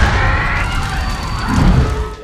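Anime fire sound effect: loud rushing flames with a low rumble, over music, a few high tones rising through the first second before the noise fades near the end.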